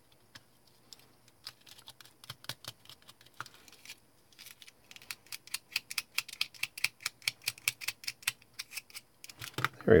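Thin aluminium foil crinkling and crackling as it is rubbed down over a small plastic model car body with a plastic paintbrush handle. It is a quick, irregular patter of small clicks, sparse at first and denser from about halfway.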